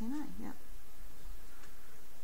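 A woman's short spoken "yeah" with a rising and falling pitch at the start, then a faint steady room background.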